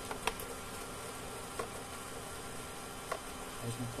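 The automatic document feeder of an HP Color LaserJet Pro MFP M177fw pulling a sheet through to scan it: a steady motor whir with a few light clicks.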